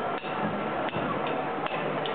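Drumsticks clicked together in a count-in before a rock band starts a song: three sharp, evenly spaced clicks, about three-quarters of a second apart.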